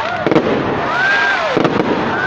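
Fireworks going off overhead: dense crackling with clusters of sharp pops, and a high tone that rises and falls about a second in.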